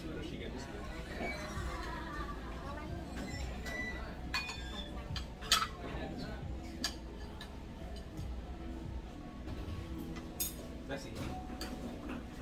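Spoons and chopsticks clinking against ceramic soup bowls at a dining table, a few sharp clinks, the loudest about five and a half seconds in.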